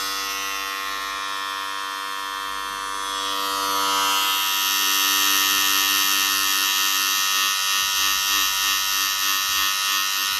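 Electric hair clippers running steadily while cutting a buzz cut. The buzz grows louder and brighter about four seconds in.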